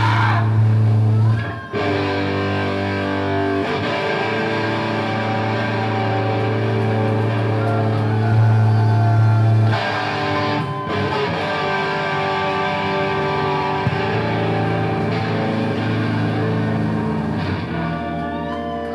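Loud electric guitar through stage amplifiers: long held, ringing chords and droning notes with a heavy low hum, changing pitch about a second and a half in and again about ten seconds in, with hardly any drum hits.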